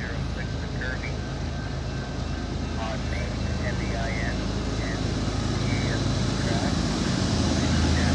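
CN freight train's diesel locomotives approaching: a low rumble that grows steadily louder.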